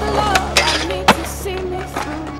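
Skateboard wheels rolling and the board knocking, with a sharp clack about a second in, over a song with singing.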